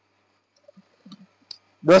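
Near silence with a few faint soft sounds and one sharp click about one and a half seconds in, then a man's voice starts at the very end.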